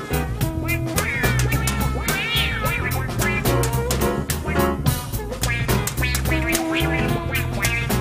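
Jazz-funk band playing: soprano saxophone phrases with bending, gliding notes over electric guitar, bass and a drum kit keeping a steady, fast beat.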